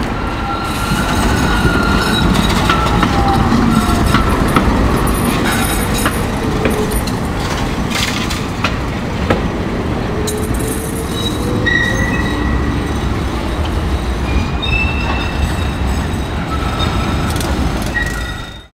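Trams running on the rails: a steady low rumble with a few sharp clicks, and thin high wheel squeals from the curved track, most noticeable in the last few seconds.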